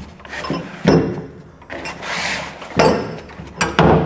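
Canvas tool roll being untied and unrolled on a painted metal floor: cloth rubbing and sliding, with a longer scrape about halfway through, and the steel tools inside knocking against each other and the floor.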